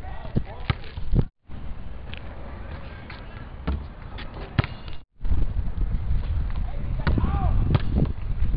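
Several sharp knocks of a basketball on an outdoor asphalt court, over low wind rumble on the microphone. The sound cuts out briefly twice.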